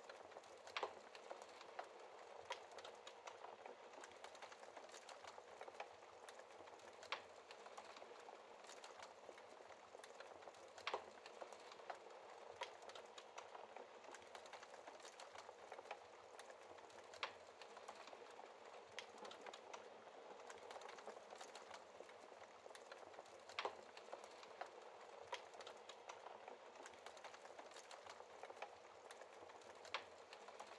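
Faint wood fire crackling in a fireplace: a soft, steady hiss dotted with irregular small clicks and a few sharper pops.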